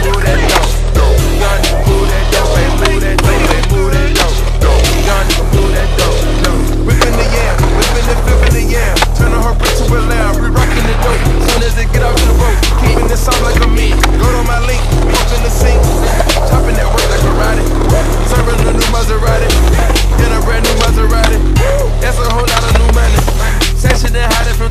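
Skateboard wheels rolling, with frequent sharp clacks of the board popping and landing tricks, over a music track with a heavy repeating bass line.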